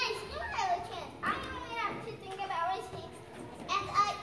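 Young children's high-pitched voices speaking lines, in short phrases with pauses between.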